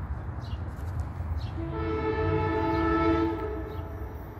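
Multi-tone train horn sounding one long blast that starts about a second and a half in and lasts about two seconds, over a low rumble.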